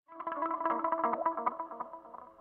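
Effects-laden electric guitar starting out of silence with a quick run of picked notes, drenched in chorus and echo. The playing eases off near the end.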